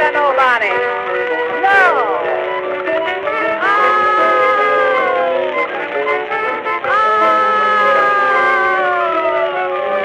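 A small 1920s jazz band playing a slow blues on an old recording, its lead lines holding long notes that slide downward in pitch.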